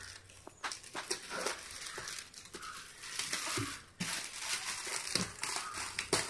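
Metallic foil gift wrap being torn and pulled off a box by hand, crinkling and crackling in irregular rustles.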